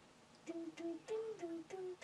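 A young boy singing a simple tune in short, separate notes, beginning about half a second in.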